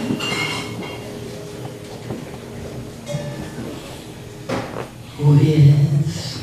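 Live jazz ballad accompaniment with soft held chords. A louder sustained melody note comes in about five seconds in.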